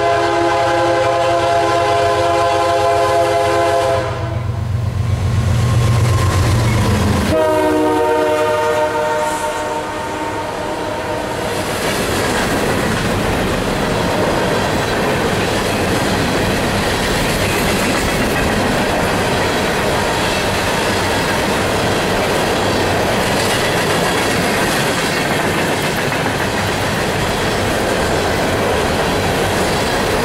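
Horn of a CSX GE ES40DC locomotive sounding a long blast as the train approaches. About four seconds in, the lead GE and trailing EMD SD40-2 engines pass close with a loud low rumble, and a second horn blast sounds, a little lower in pitch, until about eleven seconds in. From about twelve seconds on, empty steel coal hoppers roll by with steady wheel clatter over the rail joints.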